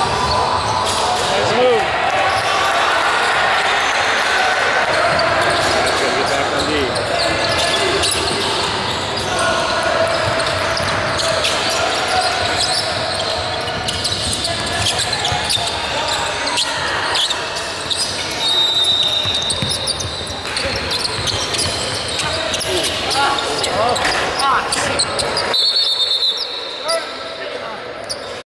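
Basketball game in a large echoing gym: a ball bouncing on the hardwood court among indistinct voices of players and spectators. A referee's whistle sounds briefly twice in the second half.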